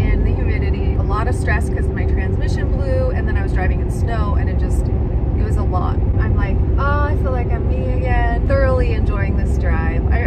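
Steady road and engine noise inside a Chevrolet Suburban's cab at highway speed, with a low steady hum under it and a woman talking over it.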